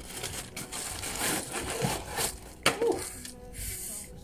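Plastic packaging rustling and crinkling as it is handled and pulled off a tripod by hand, with a sharp click a little after halfway.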